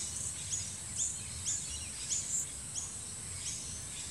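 Evening outdoor ambience: a small creature chirping over and over, a short high note falling in pitch about twice a second, over a faint steady background hiss.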